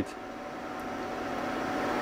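Steady whirring of a cooling fan with a faint constant whine, slowly growing louder.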